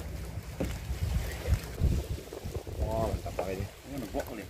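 Low, steady engine drone with wind buffeting the microphone, a few dull knocks, and a short voice about three seconds in.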